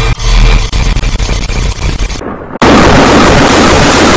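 Heavily distorted, clipped audio from a bot-processed meme edit: a loud crackling rumble that, about two and a half seconds in, jumps abruptly to a dense wall of full-volume distorted noise.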